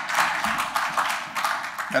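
Applause from a roomful of people: many hands clapping in a dense, even patter that stops just before the end.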